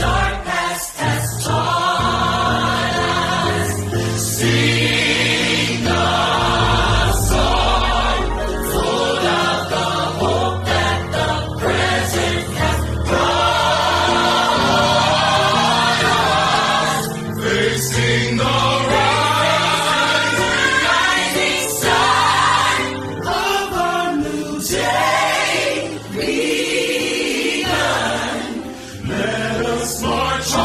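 Gospel choir singing with instrumental accompaniment and a sustained bass line.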